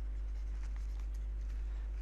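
Faint light ticks and scratches of a stylus on a pen tablet as a word is handwritten, over a low steady hum.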